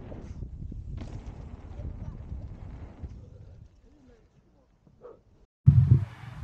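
Low rumble of wind and tyre rolling noise on the camera's microphone as a mountain bike rides a dirt pump track, with scattered small knocks. It stops a little past halfway. A sudden loud rumble starts just before the end.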